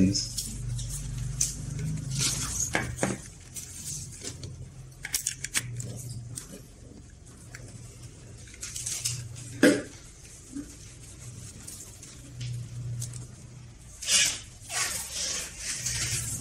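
Scattered handling noises: short clicks, knocks and brief hissy rustles as the TV is plugged in and handled, with a low hum that comes and goes.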